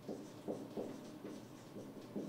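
Marker pen writing on a whiteboard: a quick run of short, faint strokes.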